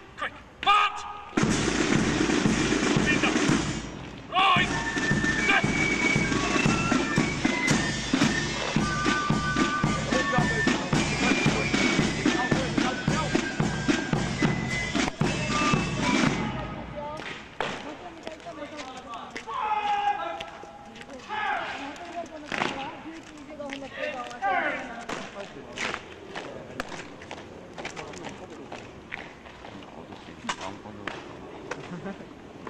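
A Foot Guards corps of drums playing a march on fifes, side drums and bass drum, a high fife tune over fast, even drumming. It breaks off abruptly at about 17 seconds, and after that a man shouts drill commands, with scattered sharp knocks.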